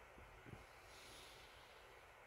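Near silence: faint steady background hiss, with a soft knock about half a second in.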